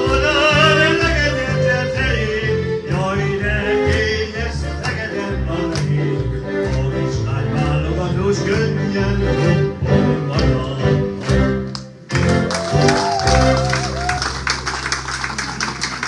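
Man singing a Hungarian magyar nóta into a microphone, accompanied on electronic keyboard. About twelve seconds in the singing stops and audience clapping breaks out over a held final chord.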